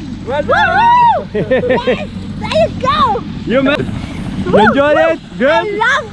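Excited human voices whooping, shrieking and laughing in short bursts of rising and falling pitch, over a steady low rumble.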